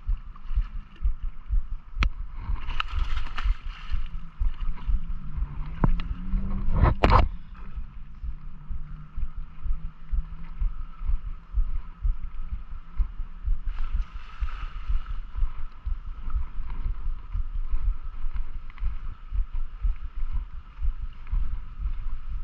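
A baitcasting reel is cranked while a hooked pike is reeled in, over a steady low rumble of thumps on the microphone. There are a few sharp clicks, and the loudest sharp sound comes about seven seconds in.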